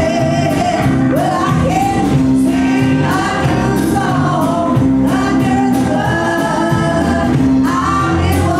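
A group of women and men singing a gospel song together at the microphones, over a band with drums.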